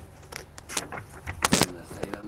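Small clicks and a brief rattle of objects being handled, loudest about one and a half seconds in.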